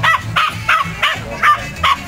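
A young mudi puppy barking at a flock of sheep as it herds them: six short, high barks in a quick run, about three a second, and it keeps on barking.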